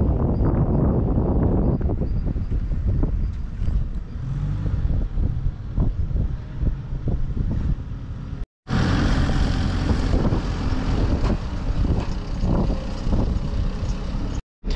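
A heavy truck's diesel engine running, heard in two outdoor shots. The sound cuts out for a moment about eight and a half seconds in.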